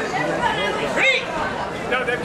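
Many overlapping voices of spectators chattering, with one louder call about a second in.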